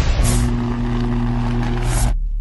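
Logo-intro sound effect: a steady low hum under a loud noisy rush, with a swoosh just after the start and another near the end before it cuts off suddenly.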